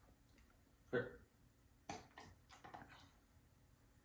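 Near silence: quiet room tone, with one short sharp click about two seconds in.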